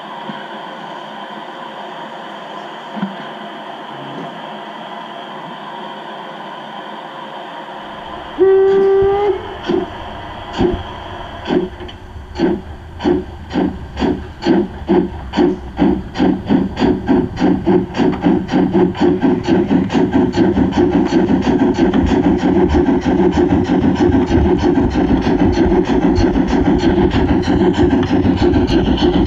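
Gauge 0 model steam locomotive starting away: a short whistle about eight seconds in, then steam chuffs that begin slowly and quicken steadily to a fast, even beat as the train gets under way.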